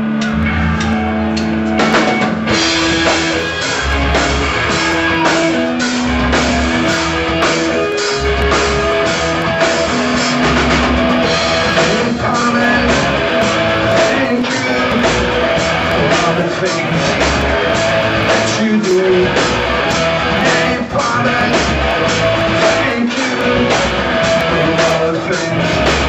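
Live rock band playing a song on electric guitars, bass guitar and drum kit. It opens on a held note, and the full band with a steady drum beat comes in about two seconds in.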